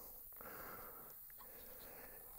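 Near silence: faint background with a few very faint clicks as fingers work a steel AK magazine to take its floorplate off.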